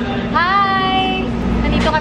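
A woman's voice in one drawn-out vocal sound whose pitch rises and then holds, followed by more talk near the end, over a steady low background rumble and hum.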